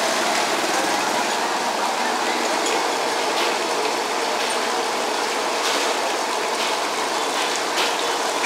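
Steady noise of road traffic, even in level, with no sharp events standing out.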